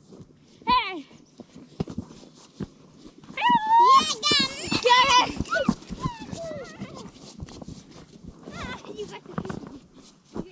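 A high, wavering, whinny-like call that shakes rapidly in pitch, loudest from about three and a half to five and a half seconds in, with a shorter similar cry about a second in and another near the end.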